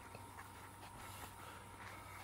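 Near silence: a faint steady background hum, with no clear punches or voices.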